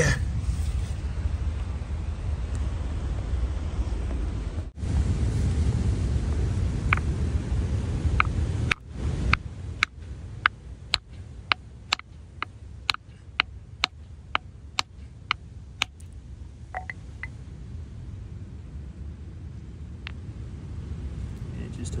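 A hammer striking a stone nodule on a rock to split it open for a fossil: a run of about a dozen sharp knocks, about two a second, starting about nine seconds in and tailing off into a few lighter taps. Before the knocks there is a low rumble of wind on the microphone.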